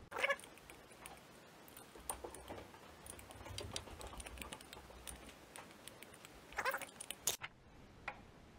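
A screw being driven by hand with a screwdriver through a plastic reel's hub into a wooden dowel: small clicks and scrapes of the tool and parts, with two short squeaks, one near the start and one near the end.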